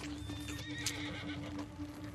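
Film soundtrack: a low, steady music drone with a brief wavering animal call over it in the first half, and a single sharp click near the middle.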